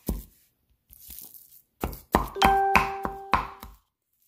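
Cleaver chopping ground pork on a wooden cutting board: two chops at the start, then a run of about six chops, roughly three a second, in the second half. A steady ringing tone is held under the last few chops.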